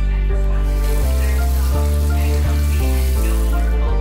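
Background music with sustained notes, and water running into a stainless-steel kitchen sink from about a second in until just before the end.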